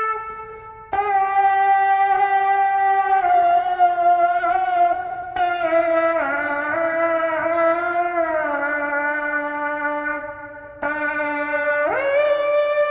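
A shofar played as a melody instrument, sounding long held notes with a bright, buzzy tone that step gradually lower through the phrase. Short breaks for breath come about a second in, around five seconds in, and just before the end.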